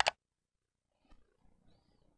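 Near silence: faint room tone, after a brief sharp sound at the very start.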